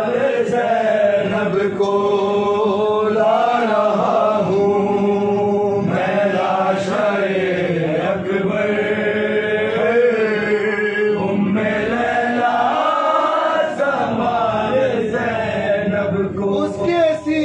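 Male voice chanting a Shia Muharram mourning lament in Urdu, with slow melodic lines of long notes that bend and fall in pitch.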